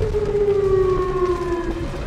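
Outdoor tornado warning siren sounding, its pitch sliding slowly downward, heard from inside a car. The creepy wail is the town's warning that a tornado is approaching.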